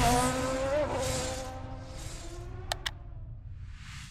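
Sound effect for an animated channel logo: a drone with a gliding pitch fading away over the first two seconds, then two sharp clicks and a soft swish near the end.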